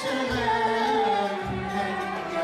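Live Turkish classical music: female and male soloists singing a melody over the accompanying instrumental ensemble, with a low beat about once a second.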